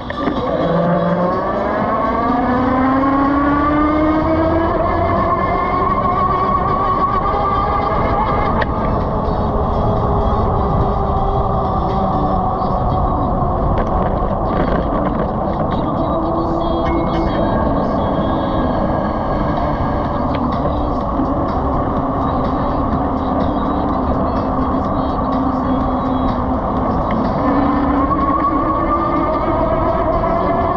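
Super Monarch 1000-watt electric motor whining, rising in pitch over the first several seconds as it speeds up, then holding a steady pitch while cruising, and rising slightly again near the end. Wind and road noise rush underneath.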